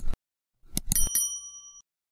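Subscribe-button animation sound effects: a click right at the start, then a quick run of clicks about three-quarters of a second in, followed by a short bell ding that rings for under a second and stops.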